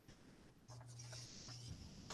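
Near silence: faint room tone, with a faint low hum about halfway through.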